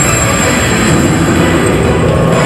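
Grand Cross Legend medal-pusher machine playing a loud, continuous, noisy sound effect with its jackpot-stage animation, with no clear melody in it.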